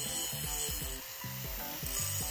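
Angle grinder with a cutting disc cutting through a steel rod: a steady high hiss over a thin, even motor whine. Background music with a regular beat plays over it.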